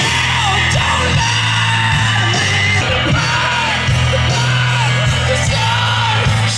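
Live rock band playing, with steady bass notes under a voice singing or shouting along.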